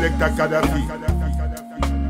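Reggae music with a deep, heavy bass line and drums, and a chanted, deejay-style vocal in the first half. The bass drops out briefly near the end.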